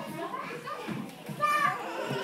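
Young children's voices and chatter, with one short, high-pitched child's call about one and a half seconds in.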